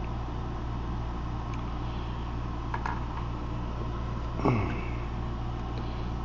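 Steady low background hum, with a few faint clicks of plastic building pieces being handled and a short sound falling in pitch about four and a half seconds in.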